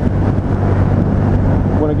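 2012 Triumph Rocket III's 2.3-litre three-cylinder engine running at a steady cruise, a constant low drone, with wind rushing over a helmet-mounted microphone. A man's voice starts near the end.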